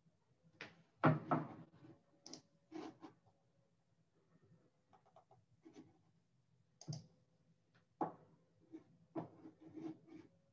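Irregular clicks and knocks from a computer mouse and keyboard being handled at the microphone, with the loudest knock about a second in.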